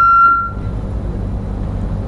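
Sound system in a lecture hall: a short, high, steady ringing tone, typical of microphone feedback, fades out within the first second. Under it runs a steady low hum.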